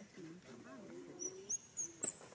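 Faint distant voices, with a few short, high bird chirps in the second half.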